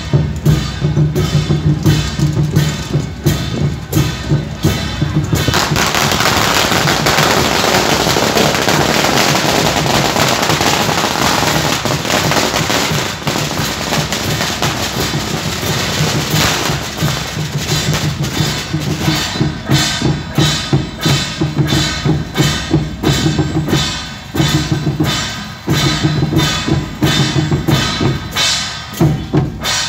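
Procession percussion, a big drum with large hand cymbals beating a steady rhythm. About five seconds in, a long string of firecrackers sets off a dense, loud crackle that covers the drumming until about sixteen seconds in. The drum and cymbals then come through again.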